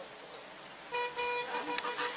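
Car horn honking: two short toots about a second in, then a longer honk.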